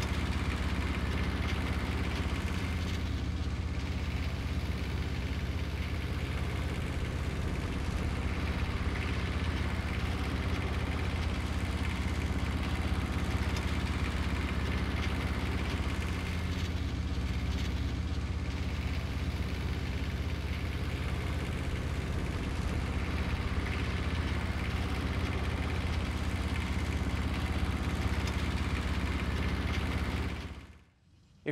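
Engine of the mastic machine rig running steadily at low speed with a constant low hum, as the trailer is pulled slowly along.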